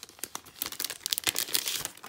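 Clear plastic sleeve and paper packaging crinkling as hands handle and open it, in a rapid, irregular run of crackles.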